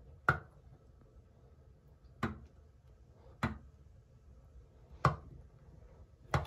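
Plastic pump on a glass soap-dispenser bottle pressed by hand four times, each stroke a short sharp click, the first the loudest, with one to two seconds between strokes.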